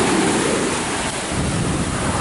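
Sea surf breaking and washing onto the shore, a steady rush of water.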